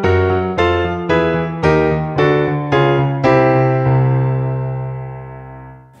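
Nord Stage keyboard playing a piano sound: left-hand octaves struck about twice a second under chords moving chromatically, a left-hand octave technique exercise. The last chord, struck about three seconds in, is held and fades away.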